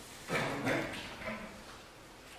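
A few brief, quiet vocal sounds from a person, about a third of a second in and again twice before the middle, then a lull.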